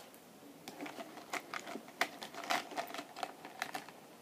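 Irregular mouth clicks of a person chewing a jelly bean close to the microphone.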